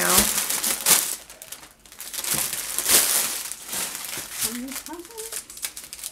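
Plastic packaging crinkling as strips of bagged diamond-painting drills and the clear plastic sheet over the canvas are handled: irregular rustles and crackles, with a short lull just before two seconds in.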